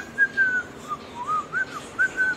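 A whistled tune: a run of short, clear notes gliding up and down in pitch, with a brief pause just before the middle.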